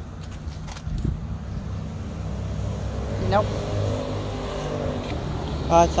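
An engine running steadily at low speed, a low rumble, with a few faint clicks in the first second.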